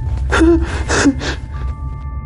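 A person gasping twice in quick succession, short breathy intakes about half a second apart, over a low steady droning music bed with thin held tones.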